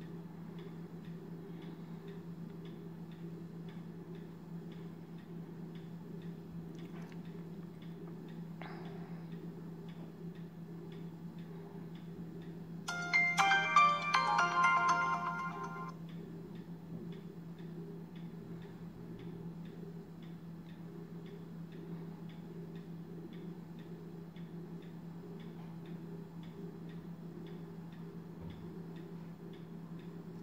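Kospet Hope smartwatch playing its boot-up jingle, a short bright melody of about three seconds midway, as it restarts. Under it runs a steady low hum with faint, regular ticking.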